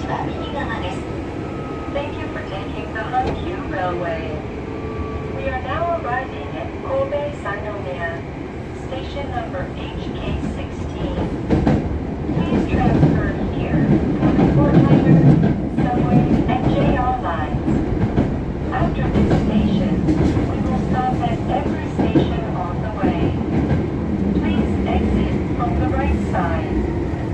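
Hankyu 7000 series electric train running, heard from inside the car: a faint whine slides slowly down in pitch over the first several seconds as the train slows. From about twelve seconds in, the rumble of wheels on rail grows louder.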